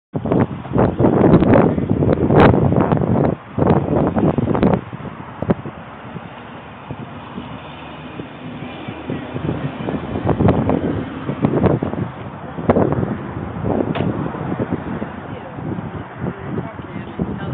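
Rustling and wind noise on a handheld phone microphone, in irregular bursts that are loudest in the first few seconds and again near the end, with indistinct voices.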